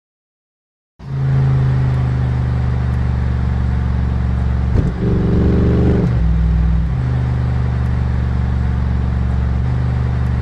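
Bentley Continental GT engine and exhaust, cutting in about a second in at a steady idle. About four seconds in it is revved once, held briefly at a higher pitch, then drops back and settles to idle again by about seven seconds.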